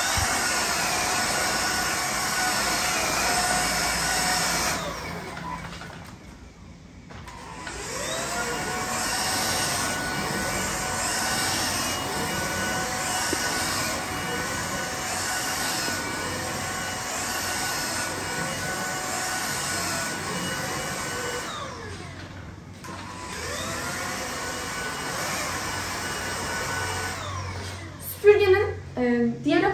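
Redroad V17 cordless stick vacuum running steadily with a high motor whine and rushing airflow. Twice, about five seconds in and again about twenty-one seconds in, the motor winds down in pitch and then spins back up to full speed.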